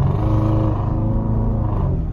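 Straight-piped 5.0 V8 exhaust of a Kia K900 droning steadily while the car cruises, heard from inside the cabin.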